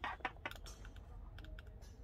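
A quick series of light clicks from the OxyMag ventilator's rotary control knob being turned to change a setting, most of them in the first second and a few more after.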